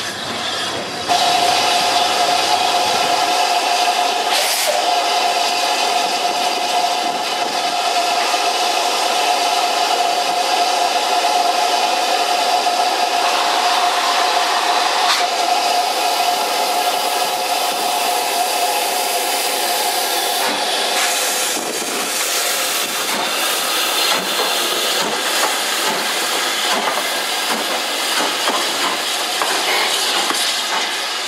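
Steam locomotive letting off steam with a loud, steady hiss carrying a high ringing tone. The tone stops about 20 seconds in, leaving a rougher, uneven hissing.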